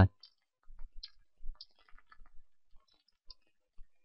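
Quiet, irregular clicks of keys being typed on a computer keyboard, about a dozen light taps spread unevenly over a few seconds.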